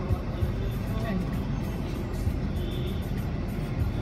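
City street traffic heard from inside a car: a steady low engine rumble with motorbikes passing close by, and faint voices in the background.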